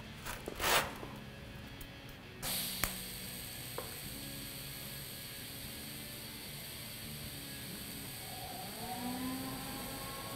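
TIG welding arc from a Miller Syncrowave 210 on thin sheet metal. About two and a half seconds in, the arc strikes with a sudden start and then holds as a steady hiss, with a faint tone rising in pitch near the end.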